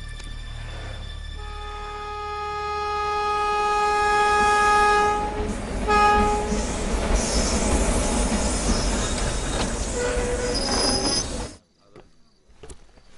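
A locomotive horn sounds one long blast, then a short second blast, followed by the loud rumble of a train running, with a wheel squeal near the end before it cuts off abruptly.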